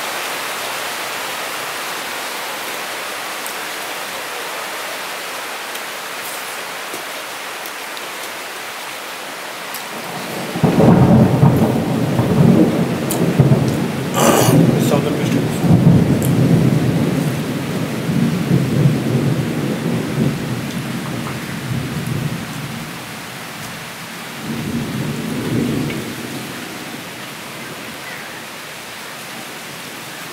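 Steady rain, then a loud roll of thunder that starts suddenly about ten seconds in, with a sharp crack early on, and rumbles unevenly for over ten seconds. A second, shorter rumble follows near the end.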